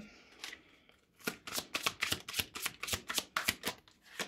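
A deck of tarot cards being shuffled by hand: a quick run of crisp card clicks that starts about a second in and lasts about two and a half seconds.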